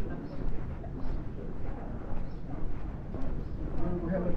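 Outdoor city street ambience: a steady low rumble with faint, indistinct voices of people around.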